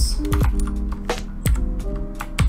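Computer keyboard being typed on, a few separate keystrokes, over background music with held notes.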